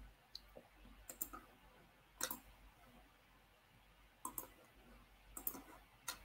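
Faint computer mouse clicking in small groups of two or three clicks, spaced about a second apart.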